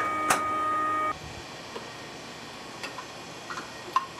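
Space shuttle toilet trainer's suction fan running with a steady whine, which cuts off suddenly about a second in. A few light clicks follow, the sharpest near the end.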